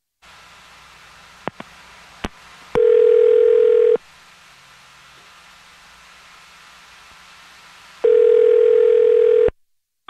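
Telephone line opening with a few clicks, then the ringback tone of an outgoing call: two rings about four seconds apart while the called phone rings, before it is answered.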